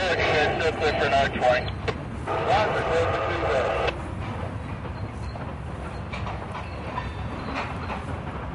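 Freight cars rolling across a steel truss bridge, a steady low rumble. Voices talk over it for the first few seconds.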